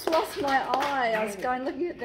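A person's voice talking between songs, with a single sharp click about a third of the way in.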